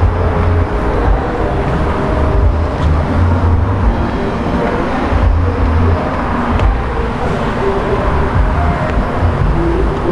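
Road traffic on a multi-lane city road: a steady rumble of passing cars' tyres and engines.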